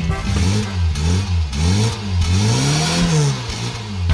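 A car engine revving up and down about four times, the pitch rising and falling with each rev, the last rev the longest. It is dubbed onto children's electric ride-on toy cars, which have no engine of their own.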